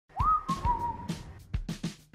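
Commercial jingle music: a whistle slides up into one long note that drifts slightly lower and fades after about a second, over a few drum beats.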